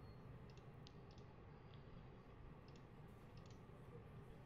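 Near silence with several faint, sharp computer mouse clicks, some in quick pairs, as the software's dialog buttons are clicked.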